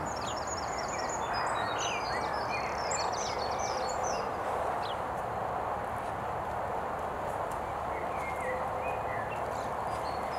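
Small birds chirping, with runs of short high notes in the first three seconds and a few more calls near the end, over a steady outdoor background hiss.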